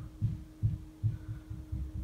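Soft, dull low thumps about three a second from a fingertip patting and blending concealer into the skin under the eye, over a faint steady electrical hum.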